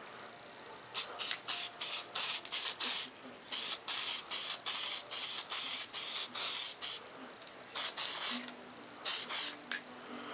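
Aerosol spray paint can spraying a light coat: a run of short hisses about a second in, one longer spray of about three seconds in the middle, then a few short bursts near the end.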